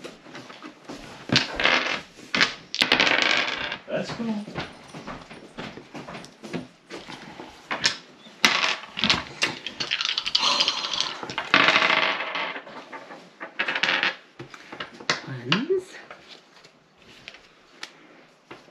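Dice rattling as they are shaken in cupped hands, in stretches of dense clicking, then clattering out onto a wooden table.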